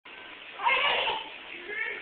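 Baby's high-pitched squeal about half a second in, followed by a shorter, softer vocal sound near the end.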